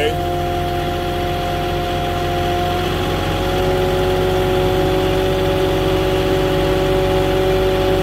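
Engine of a Moffett truck-mounted forklift running steadily as it drives with a load of lumber on its forks, heard from the operator's seat; the engine note rises a little about three seconds in.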